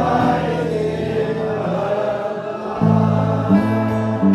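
Live acoustic folk song: singers hold the last sung note, with the audience singing along, over acoustic guitar and electric bass. About three seconds in, the guitar and bass strike a new chord.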